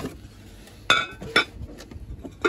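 Two sharp glass clinks about half a second apart as a Borcam glass lid is set onto a glass casserole bowl.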